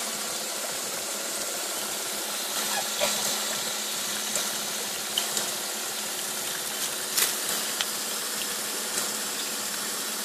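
Water from a hose rushing and splashing steadily onto the turbine inside a homemade model hydroelectric generator, with a steady low hum underneath and a few faint ticks.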